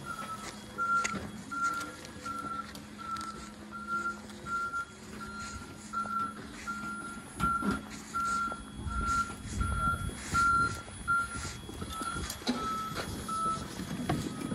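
Vehicle reversing alarm beeping, one steady-pitched beep a little under twice a second, over a steady low hum; the beeps stop near the end.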